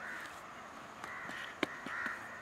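Crows cawing repeatedly in the background, a hoarse call about once a second. A sharp knock sounds about one and a half seconds in as the brick mould is handled.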